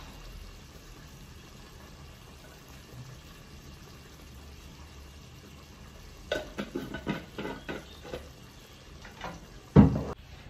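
Rice frying with tomato in a pot, a soft steady sizzle. A few light clinks and taps come about six to eight seconds in, and there is one loud knock just before the end.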